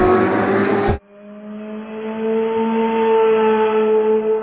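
Car engine sound effect: a rising rev over music that cuts off sharply about a second in, then a steady engine note that swells in and holds.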